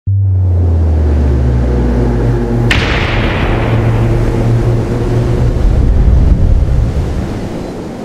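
Cinematic storm-themed intro sound effect: a deep rumbling drone with low held tones, a sudden sharp crack like a thunderclap about three seconds in, then rumble that starts to fade near the end.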